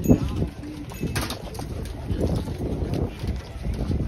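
Wind gusting on the microphone, an irregular low rumble, with scattered voices of people walking close by and a brief sharp sound about a second in.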